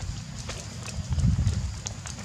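Low rumble of wind and handling noise on a handheld camera's microphone as it is moved, with a heavier thudding burst about a second in.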